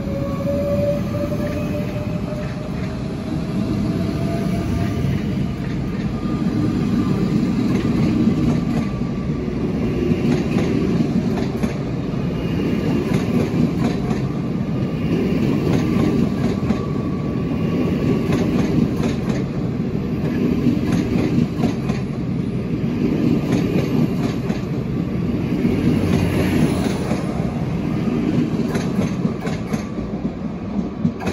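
SBB double-deck electric train, a Bombardier FV-Dosto, accelerating out of the station past the platform. In the first few seconds the drive gives a rising whine. Then the wheels rumble and clack over the rail joints, swelling every couple of seconds as the coaches roll by.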